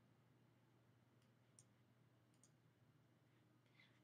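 Near silence: room tone with a few faint clicks of a computer mouse in the middle.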